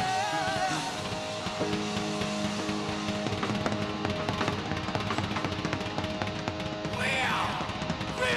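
Live hard rock band playing: electric guitars holding sustained chords over a drum kit. A wavering sung note ends about a second in, and sliding, falling cries come near the end.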